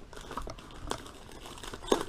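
Paper wrapping and brown packing tape on a parcel crinkling and rustling as they are cut and pulled open by hand, with a few short sharp crackles, the clearest about a second in and near the end.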